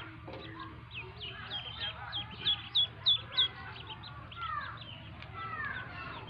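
Many ducklings peeping together, short high falling calls overlapping. A quick run of loud peeps comes near the middle, then a few longer, lower falling calls.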